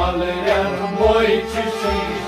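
Kashmiri Sufi kalam played live: a man singing over a bowed sarangi, a harmonium drone and a plucked rabab, with low drum strokes near the start and about a second in.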